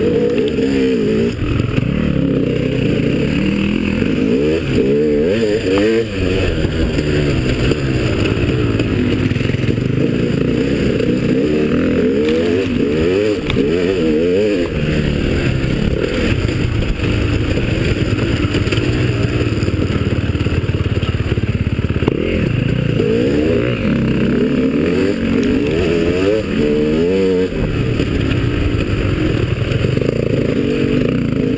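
Enduro motorcycle engine heard on board while riding a dirt trail, revving up and down again and again as the throttle is opened and closed.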